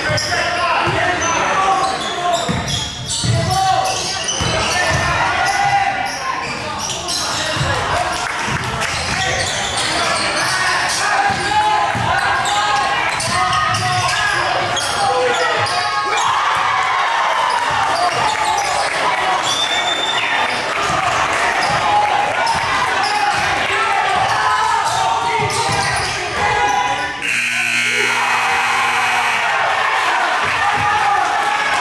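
Basketball bouncing on a hardwood gym floor, repeated knocks in the first half, over the chatter and calls of players and spectators echoing in a large gym.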